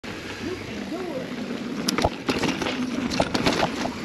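Mountain bike riding over a rocky, rooty trail, giving sharp, irregular clicks and knocks from the bike and tyres on rock, starting about two seconds in.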